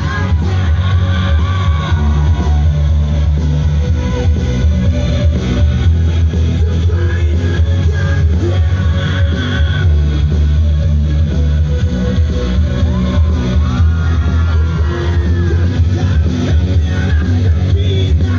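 A live band playing a rock song through stage loudspeakers, with a heavy, steady bass and electric guitar lines over it.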